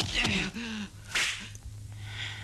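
Kung fu film fight soundtrack: a fighter's short falling yell, then a little over a second in a sharp swish sound effect of a strike. A steady low hum from the old soundtrack runs underneath.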